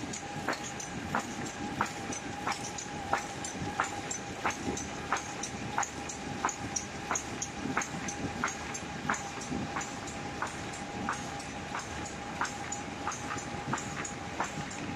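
Semi-automatic paper bag making machine running, with a sharp mechanical clack repeating evenly about three times every two seconds over a steady hum and rumble.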